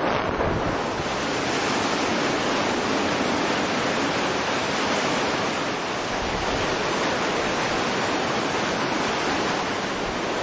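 Tropical cyclone wind and rain blowing hard and steadily, a dense unbroken rush of noise with wind buffeting the microphone.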